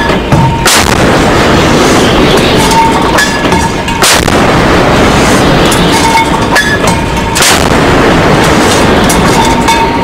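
A warship's deck gun firing, three heavy shots about three and a half seconds apart, over a steady loud rush of noise.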